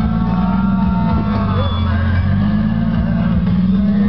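Jeep TJ engine running under load as it crawls up a rock ledge, the revs dipping and rising again.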